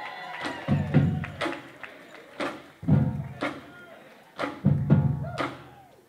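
A drumline's marching bass drums playing a beat: clusters of low drum hits about every two seconds, with sharp stick clicks in between.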